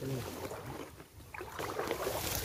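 Shallow river water sloshing and splashing as a person wades through it, with leaves and twigs rustling and brushing against the camera; the splashing and rustling get louder near the end.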